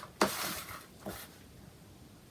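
Paper rustling as a notepad page is handled and lifted: a sudden rustle shortly after the start that fades within half a second, and a softer one about a second in.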